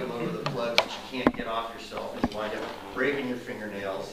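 A man talking, with four short, sharp clicks or taps among his words in the first two and a half seconds.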